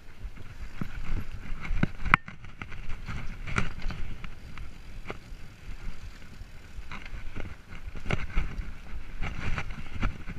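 Mountain bike rolling over sandy, bumpy singletrack: a rumbling of tyres and wind on the microphone, broken by frequent irregular clicks and rattles as the bike jolts. One sharper knock comes about two seconds in.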